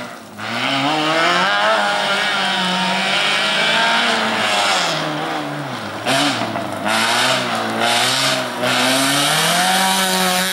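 First-generation Renault Clio race car's engine revving hard, its pitch rising and falling again and again as the throttle is lifted and reapplied through a cone slalom. There are a few short crackles around the middle, and the car is loud and close near the end.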